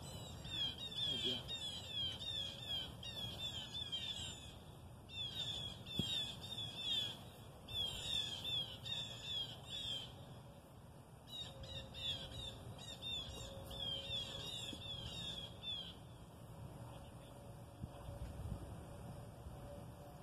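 A songbird calling outdoors: quick, high downslurred chirps repeated several times a second in runs of a few seconds with short pauses between, over a low steady background rumble.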